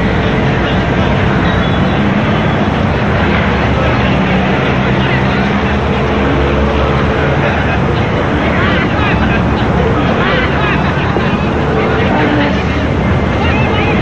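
A loud, steady aircraft engine drone with a background murmur of voices.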